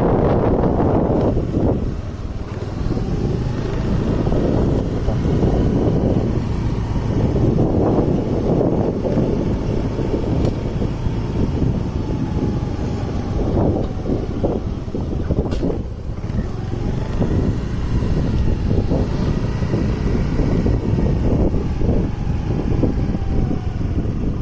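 A road vehicle running while on the move, with wind rumbling on the microphone and a faint whine that rises and falls.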